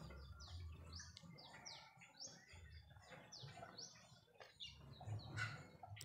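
Faint chirping of small birds: a steady string of short, high, falling chirps.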